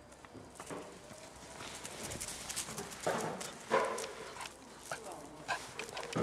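Golden retriever puppies yipping and whining as they play. A woman's voice and scattered taps and knocks are mixed in, with the loudest calls about three to four seconds in.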